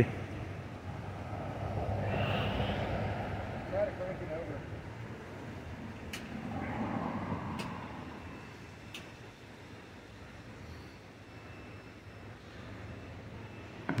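Road traffic: two vehicles pass one after the other, each a rush of tyre and engine noise that swells and fades, about two seconds in and again about seven seconds in.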